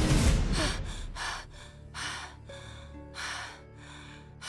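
A girl's rapid, heavy gasping breaths, about two a second, as she jolts awake in bed, over soft sustained music. A loud rumbling effect dies away in the first second.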